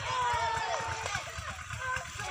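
Several people's voices calling and shouting over one another, one held call early on, with an uneven low rumble underneath.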